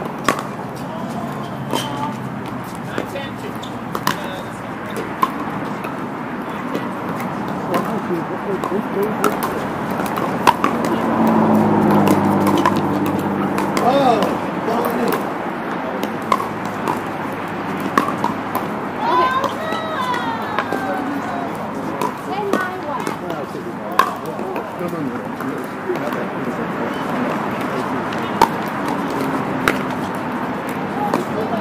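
Pickleball paddles striking the hard plastic ball: sharp pops at irregular intervals, some close and some from neighbouring courts, over a steady murmur of players' voices that rises around the middle.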